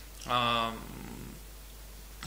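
A man's drawn-out hesitation sound, a steady 'aaa' held for about half a second, trailing off into a faint, low, creaky murmur.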